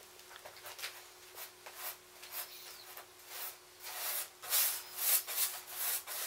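Paintbrush loaded with thick white paint scrubbed across a canvas in short back-and-forth strokes, a dry scratchy rubbing, growing louder about two-thirds of the way in.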